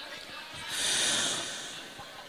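A Quran reciter's deep in-breath drawn close to a handheld microphone between recited phrases, a rush of air that swells and fades over about a second.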